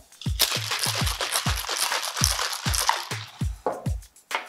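Ice rattling in a stainless steel cocktail shaker as it is shaken hard, from about half a second in for about three seconds. Background music with a steady beat plays throughout.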